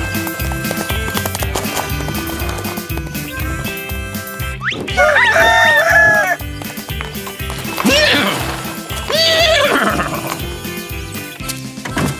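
Upbeat cartoon theme music with a steady beat. About five seconds in, a cartoon rooster crows loudly over it, a long cock-a-doodle-doo that starts on a rising swoop. Two shorter calls follow a few seconds later.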